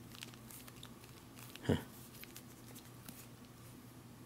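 Faint clicks and crackles of a thin metal food can being squeezed in the hands, its lid and sides flexing, with one brief vocal sound a little before halfway.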